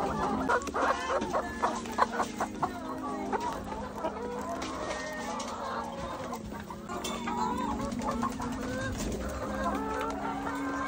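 A flock of brown laying hens clucking and squawking as they crowd a feed trough, with many short calls overlapping, busiest in the first few seconds.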